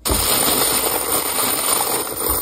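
Empty Lapua .284 brass rifle cases rattling and clinking in a loose, continuous clatter as a hand stirs through a box full of them.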